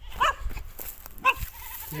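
A goat bleating, two short calls in the first second and a half.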